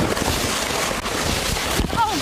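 A plastic sled sliding fast over wet, slushy snow, a steady rushing scrape, with wind buffeting the microphone.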